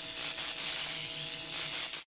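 Intro sound effect of a neon sign buzzing: a steady electrical hiss with a faint hum under it, cutting off suddenly at the very end.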